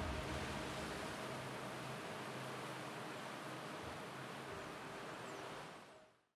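A soft, steady wash of noise with faint held tones beneath it, slowly fading and cutting off at the very end.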